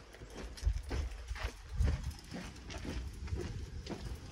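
Footsteps on a paved village lane while walking, a steady series of short strikes about two a second.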